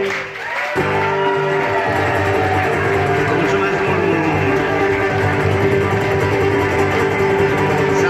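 Acoustic guitar strummed steadily, breaking off briefly at the start and picking up again under a second in, with the audience clapping along and voices over it.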